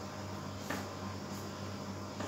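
Faint strokes of a marker on a whiteboard, a couple of short scratches, over a steady low hum of room tone.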